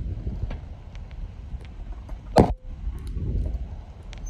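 Wind rushing over a phone's microphone as it rides back and forth on a swing, a low rumble that swells twice, with one sharp click about halfway through.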